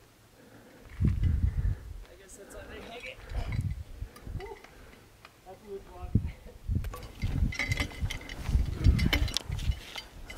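Wind buffeting the microphone in irregular gusts of low rumble, with faint voices and a run of sharp clicks in the last few seconds.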